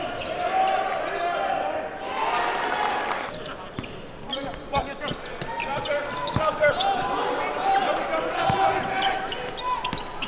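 A basketball being dribbled on a hardwood court, with many short sharp strikes, under the voices of a crowd that swell briefly about two seconds in.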